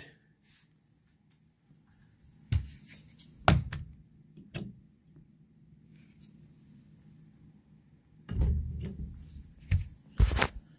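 Handling noises at a sliding closet door's plastic floor guide: three sharp clicks or knocks a second or so apart, then a short low rumble near the end.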